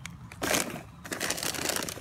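Crunching of a dry, crunchy snack being chewed close to the microphone: a burst of crunch about half a second in, then a run of fine crackles.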